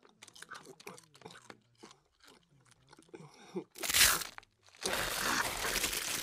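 A woman eating nachos noisily: crunching and chewing tortilla chips with wet mouth sounds. There is a loud burst of crunching about four seconds in, then heavy continuous crunching as the chips are tipped into her mouth.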